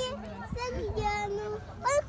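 A young child's high-pitched voice making long, drawn-out vocal sounds.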